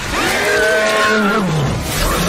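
A monster's roar sound effect: one long pitched roar that falls in pitch near the end, over a loud continuous rushing noise.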